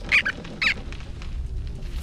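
Two short, high squeaks from cartoon squirrel and chinchilla characters, about half a second apart, near the start.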